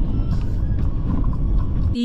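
Steady low road rumble inside a moving car's cabin on a wet, slushy road.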